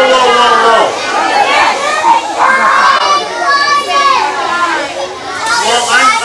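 A crowd of children talking and calling out all at once, many high voices overlapping into loud chatter.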